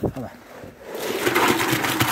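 Wet concrete tipped from a can onto the rebar cage of a footing, sliding out in a loud rushing, scraping pour that starts about a second in.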